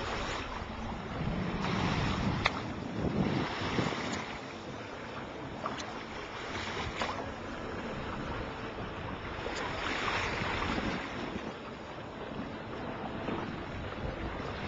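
Water rushing and splashing along the hull of a Class40 racing yacht under sail, with wind buffeting the microphone. The water noise swells twice, about two to four seconds in and again near ten seconds, and a few sharp clicks stand out.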